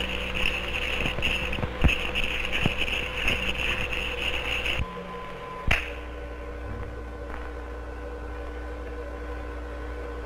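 Scratchy sound of a pen drawing on paper in uneven strokes for about the first five seconds, with a few clicks, then a single click near six seconds, over the steady hum and hiss of an early optical film soundtrack.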